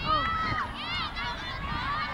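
Several women's voices shouting and calling out at once, overlapping and high-pitched, with no clear words.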